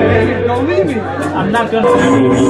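People's voices talking and chattering, one voice sliding up and then down in pitch about half a second in, with music quieter underneath.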